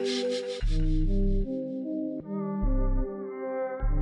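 Trap music track playing: long held bass notes come and go under sustained synth chords, and a bright hiss fades out over the first second.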